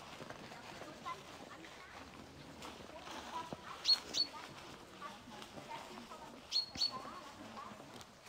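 A small songbird calling in a quiet forest: two pairs of short, high chirps, one pair about four seconds in and another near the end.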